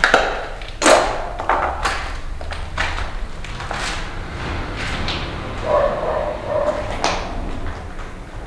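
Footsteps going down concrete stairs and onto a wooden floor, with irregular knocks and rustling from a handheld camera, the loudest about a second in. A short pitched sound comes about six seconds in.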